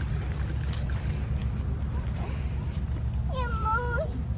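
A steady low rumble, with a young child's single high, drawn-out wordless call near the end.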